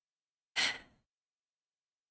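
A woman's short, breathy sigh about half a second in, a brief exhale of dismay.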